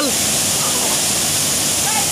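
Waterfall pouring into a pool: a steady rushing hiss of falling water.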